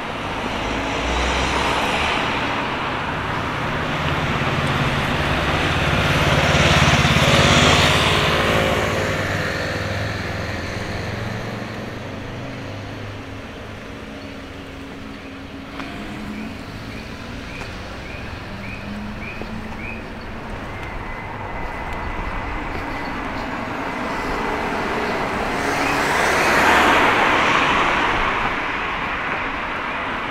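Road traffic: cars passing on the street alongside, engine and tyre noise swelling and fading, loudest about seven seconds in and again near the end.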